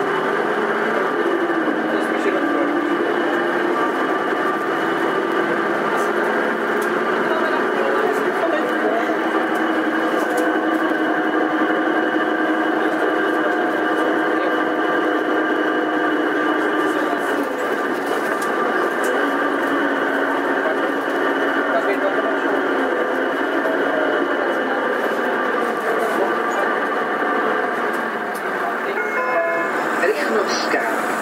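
Karosa B931E city bus running, a steady engine and drivetrain drone whose tones step up and down in pitch several times.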